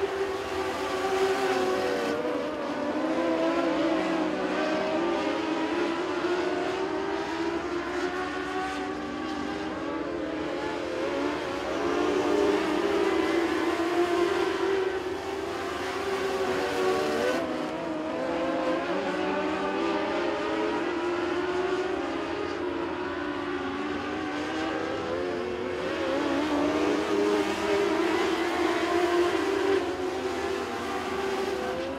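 Several Mod Lite dirt-track race cars racing together at speed, their engines making a continuous high-pitched drone that wavers up and down in pitch as they go through the turns and pass.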